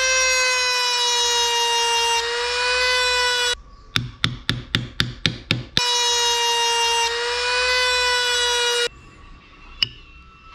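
Handheld mini rotary tool running at high speed with a steady high whine, held to a small knife-handle piece. It stops for about two seconds, during which there is a run of about nine sharp clicks, roughly four a second. It then runs again and cuts off near the end, followed by a single click.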